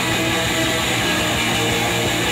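Live rock band playing a song at a steady full level: electric guitars, bass guitar and drums sounding together without a break.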